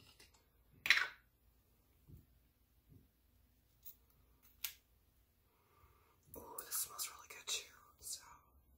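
Quiet handling of a cucumber facial-wash bottle: a short breathy hiss about a second in, two small sharp clicks in the middle, and a longer soft breathy rustle near the end.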